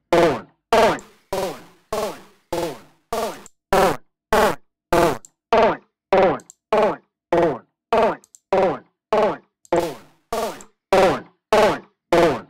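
A chopped vocal sample ("get goin'") retriggered by the Hammerhead Rhythm Station drum-machine app, about two hits a second, each a short voice fragment falling in pitch. It runs through the app's distortion effect.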